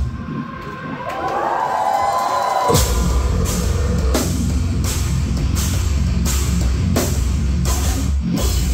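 Metal band playing live, heard loud from the crowd. The drums and bass drop out for a moment, leaving a thin wavering mid-range note, then the full band comes crashing back in with heavy drums and bass nearly three seconds in.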